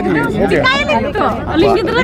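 Several people talking at once: overlapping, indistinct voices close to the microphone in a crowd.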